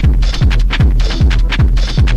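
Fast techno from a DJ mix: a kick drum that drops in pitch on every beat, about two and a half beats a second, with off-beat hi-hats between the kicks over a steady low bass.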